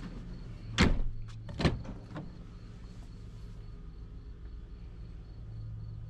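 Vehicle doors shutting: two heavy thuds about a second apart, the second followed by a lighter knock, over a steady low hum.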